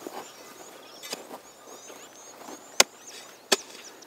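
A hand hoe's blade chopping into the soil of a planting row to dig a hole, with two sharp strikes in the second half and fainter ones about a second in.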